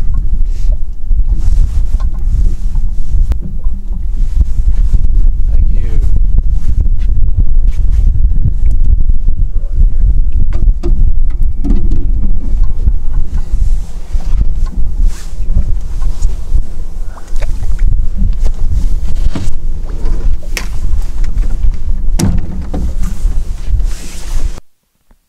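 Wind buffeting the microphone as a heavy, fluctuating rumble, with scattered knocks and clatter of handling aboard a small boat.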